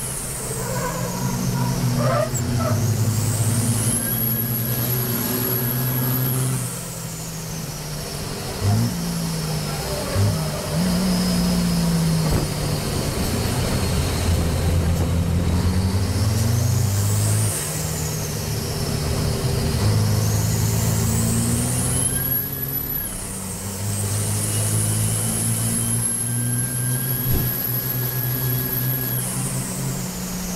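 Diesel race truck engine heard from inside the cab at racing speed, its revs climbing and dropping through gear changes, with a high turbo whistle that rises and falls with the throttle. A couple of sharp knocks come about nine and ten seconds in.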